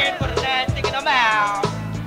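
Memphis underground rap beat: deep bass notes and kick drums under a high melodic line that slides down in pitch about a second in.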